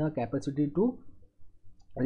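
A man lecturing in mixed Hindi and English, with a short pause about a second in before he speaks again.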